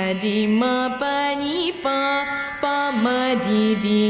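A girl singing Carnatic vocal music. She holds notes and slides between them in bending ornaments (gamakas).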